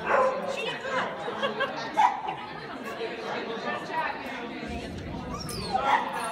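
A dog barking a few times during an agility run, the loudest bark about two seconds in, over people's chatter and echoing in a large indoor hall.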